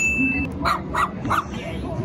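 A small dog yipping: three short, sharp barks about a third of a second apart.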